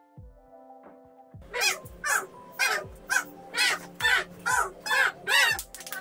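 A run of about nine loud, harsh animal calls, about two a second, starting a second and a half in as soft music notes die away.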